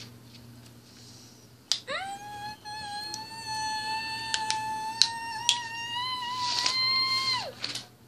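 A child's long, high-pitched vocal sound effect, a squeal that slides up about two seconds in, holds and rises slightly, then drops away near the end, with a few sharp clicks of plastic toy bricks being handled.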